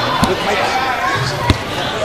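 A soccer ball struck once with a sharp thump about one and a half seconds in, over the voices and hubbub of an indoor soccer hall.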